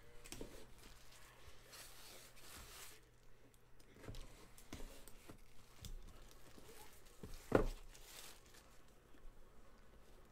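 A sealed trading-card box being opened by hand: plastic wrapping torn and crinkled off, then light knocks of the box being handled, the loudest a sharp knock about seven and a half seconds in.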